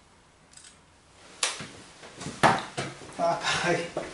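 Two sharp knocks about a second apart, the first about one and a half seconds in, the second louder, with a short spoken word near the end.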